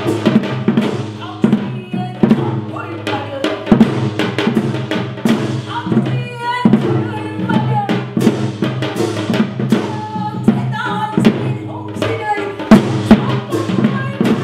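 Live traditional Korean ensemble music: frequent drum strokes over steady sustained pitched tones, with a higher melodic line coming in now and then.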